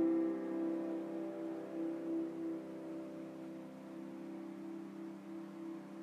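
Upright piano chord ringing on and slowly fading away, the keys held down after it was struck.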